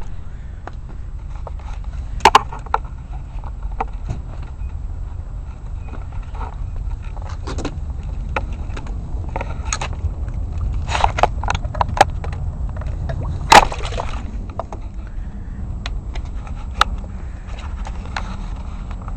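Scattered sharp knocks and clicks from the homemade PVC-pipe ROV and the handheld camera being handled as the ROV is picked up and put into the water, the loudest knock a little past the middle. Under them runs a steady low rumble.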